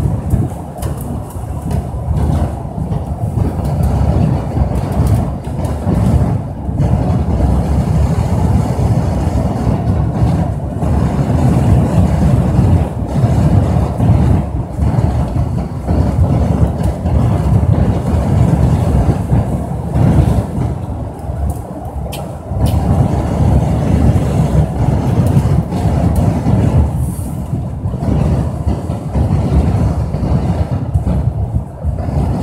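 Travel noise from a moving road vehicle: a steady, loud low rumble with wind buffeting the microphone, rising and falling unevenly throughout.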